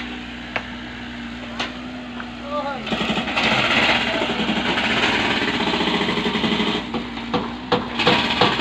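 Construction machinery: a steady engine hum with a few knocks, then about three seconds in a loud, fast rattling hammering starts and keeps going.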